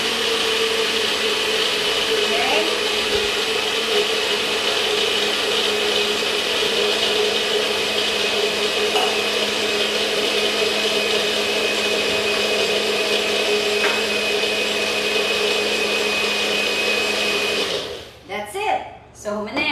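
NutriBullet personal blender running steadily with a high whine as it crushes ice cubes into a blended drink, cutting off just before the end.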